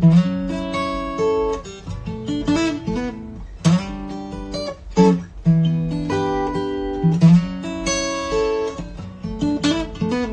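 Acoustic guitar played slowly, with chords and single notes left to ring and a few sharper strummed chords every couple of seconds.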